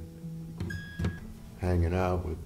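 Strings of a baritone five-string lojo ringing faintly and fading after being played, with a brief high tone and a light click about a second in.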